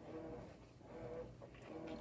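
A faint melody of short, level notes with small gaps between them.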